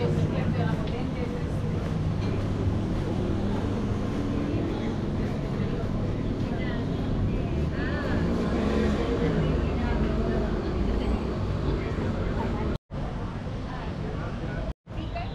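City street ambience: passersby talking over a steady low rumble of traffic. The sound cuts out abruptly for a moment near the end.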